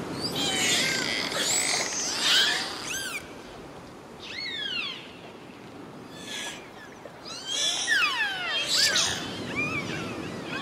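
Dolphins whistling: many overlapping whistles sliding up and down in pitch, with short buzzing click trains, over a steady wash of ocean noise. The calls are busiest in the first three seconds and again near the end.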